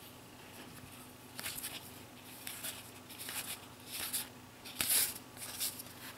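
Dragon Ball GT trading cards handled in the hands and slid over one another: a string of short, soft rustles and flicks, the loudest about five seconds in.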